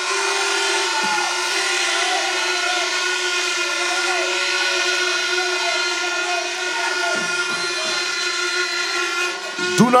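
A rally crowd cheering while several horns blow steady, overlapping notes, held almost without a break until the speech starts again near the end.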